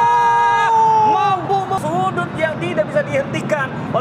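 A football TV commentator's long, held "oh" shout as a shot goes toward goal. It breaks off under a second in, and fast excited commentary follows over steady stadium background noise.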